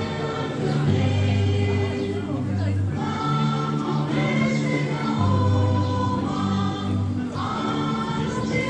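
A group of voices singing together in chorus, a slow song of long held notes that change every second or two.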